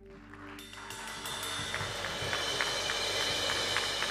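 Congregation applauding, swelling up over the first second and then holding steady, with soft held notes of background music underneath.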